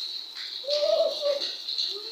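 A pigeon cooing once, a short low call about a second in, over the steady hiss of rain.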